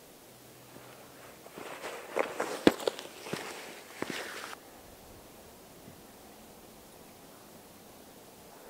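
Hiking boots stepping across bare rock, coming up close and passing, with a few sharp scuffs and clicks between about a second and a half and four and a half seconds in.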